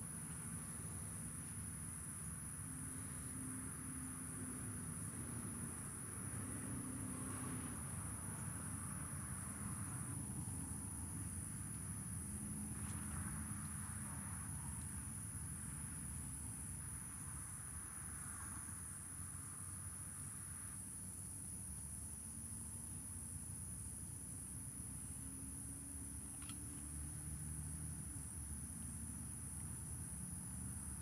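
Steady high-pitched drone of insects, with faint rustling now and then.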